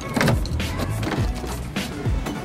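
Background music with a steady, bass-heavy beat: repeated deep kick drums over a sustained low bass, with sharp percussive hits on top.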